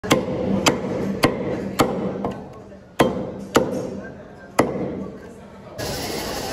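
Cleaver chopping through mutton ribs on a wooden chopping block: eight sharp strikes about half a second apart, with a short pause in the middle. Near the end this gives way to a steady hiss.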